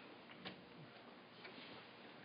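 Near silence: room tone with a faint click about half a second in and a couple of weaker ticks, from a handheld microphone being fitted into its stand clip.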